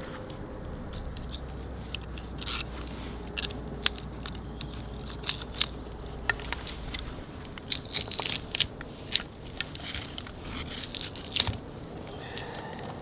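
Knife blade shaving down a split stick of wood held upright on a chopping block: short crisp scrapes and clicks, sparse at first, then coming thick and fast from about eight seconds in.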